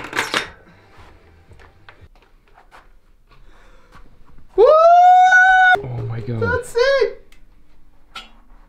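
Faint clicks and knocks as a bicycle front wheel is fitted and its axle fastened into the fork. Then a loud, high, held wordless cry of about a second, followed by shorter whooping vocal sounds.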